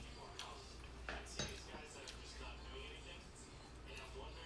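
Quiet handling of dishes or glassware, with two light clinks a little over a second in, over a low steady hum.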